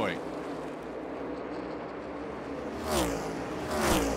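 NASCAR Cup cars running on the track, heard as a steady engine and track noise under the broadcast, swelling about three seconds in as cars go by.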